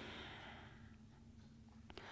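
Near silence: a faint breath out through the nose fades away in the first second, over a low steady room hum, with a small click near the end.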